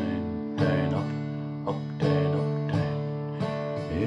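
Acoustic guitar strummed slowly on a D chord in a down, down, up, up, down, up pattern, each strum ringing on into the next.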